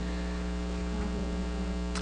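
Steady electrical mains hum with a faint hiss, in a gap with no speech.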